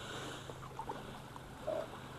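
Faint steady background of water against a small boat, with a few small handling clicks and a brief faint squeak near the end.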